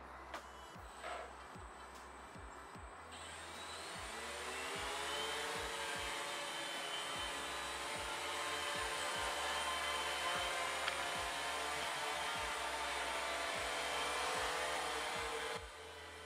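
DJI Phantom FC40 quadcopter's brushless motors and propellers spinning up about three seconds in, a whine rising in pitch, then holding a steady pitch as the drone lifts off and hovers.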